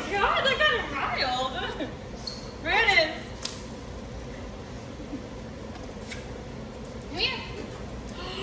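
Indistinct talking for about the first two seconds, then two short vocal sounds, one around three seconds in and one near the end, over a low room hum.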